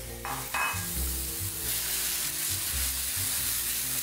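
Chopped tomato sizzling in a frying pan with onion and garlic in olive oil, stirred with a wooden spatula. The sizzle gets louder about a second and a half in.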